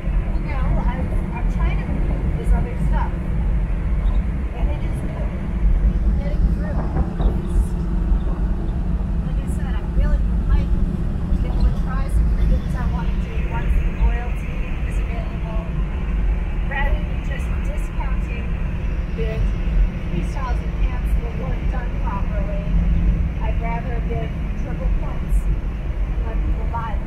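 Inside the cabin of a classic BMW at highway speed: steady engine and road noise, a continuous low drone.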